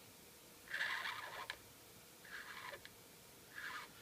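Faber-Castell PITT Artist Pen brush marker drawn across paper in three short strokes, about a second apart. The marker is somewhat drying up.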